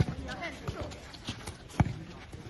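Soccer balls being kicked and passed on artificial turf: a string of sharp thuds, the loudest at the start and near the end, with children's voices calling in the background.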